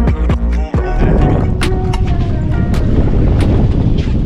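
Background music with a steady beat, and from about a second in the loud rumble of a boat running at speed with wind noise mixed under it.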